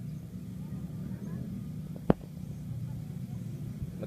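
One sharp click about two seconds in, from hands pressing the controls of a Sony RX10 III camera, over a steady low hum.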